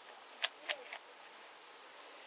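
Three sharp clicks in quick succession, about a quarter second apart, a little under a second in, over a steady faint hiss.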